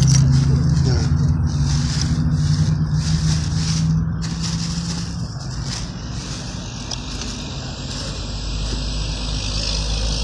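A car's engine running with a steady low hum that fades out about five seconds in, along with rustling and scraping from the phone being handled.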